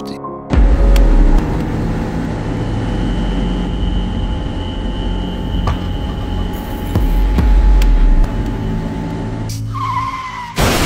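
Car being driven at high speed: loud, steady engine and road noise that starts suddenly about half a second in. Tyres squeal briefly, falling in pitch, near the end.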